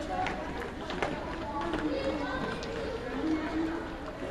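Footsteps of a group of students jogging on a gym floor, with overlapping children's voices chattering indistinctly over them.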